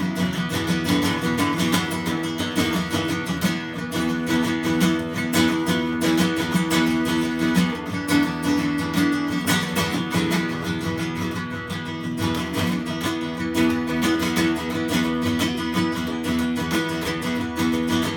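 Acoustic guitar played solo, a steady run of rapidly strummed chords with no singing.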